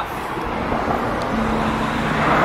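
Steady road traffic noise, an even rushing sound, with a faint low steady hum coming in about two-thirds of the way through.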